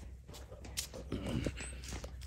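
Footsteps walking on grass: a few soft steps about a second in and again past the middle, over a low steady rumble.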